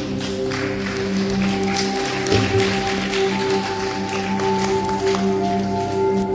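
Calm instrumental music of long held, steady tones in a slow meditative style, with new notes entering about a second and three seconds in. A wash of noise with faint ticks runs under it through the middle seconds.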